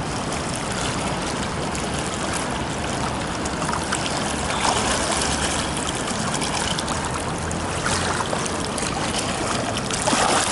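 Pool water splashing and sloshing around a swimmer doing breaststroke frog kicks and glides, with a few louder splashes about five and eight seconds in.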